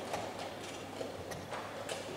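Light, irregular clicks and knocks, several a second: the clatter of wooden chess pieces being set down and chess clocks being pressed at other boards in a blitz tournament hall.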